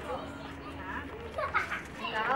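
Two young children's voices while they play, with short high-pitched cries about a second in and again a little later; no clear words.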